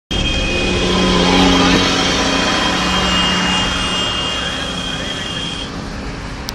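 A road vehicle running: a steady, loud noise with a low hum and a steady high whine that stops shortly before the end, with indistinct voices under it.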